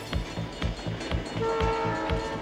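Diesel locomotive horn sounding several tones at once, starting partway through, over a steady drum beat and train noise.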